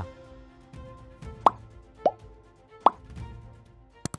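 Background music with three quick rising pops, each a short upward swoop in pitch: about a second and a half in, about two seconds in, and near three seconds. They are sound effects for an on-screen subscribe-button animation.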